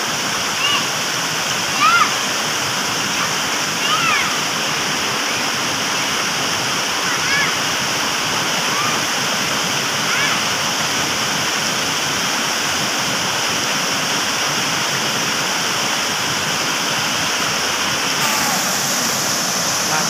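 A small waterfall pouring into a rocky pool, a steady rush of falling water. A few brief high-pitched rising-and-falling calls sound over it, the clearest about two and four seconds in.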